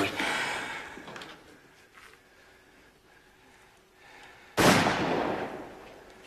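A single loud gunshot about three-quarters of the way in, starting sharply and ringing away over a second or so.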